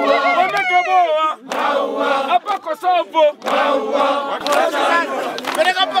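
Kilimanjaro guides and porters singing a lively Swahili group song together, many men's voices at once. It is their pre-climb song praying that the climbers finish safely.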